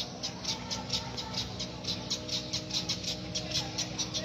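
Small birds chirping rapidly, short high-pitched chirps about five or six a second, over a steady low hum.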